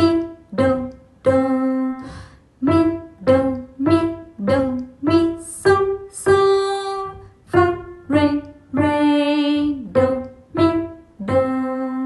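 A simple beginner's melody played note by note on piano with the right hand, short notes with a few held longer, while a voice sings the solfège note names along with it.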